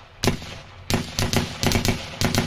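A quick, irregular run of sharp pops, one early and then coming thicker from about a second in.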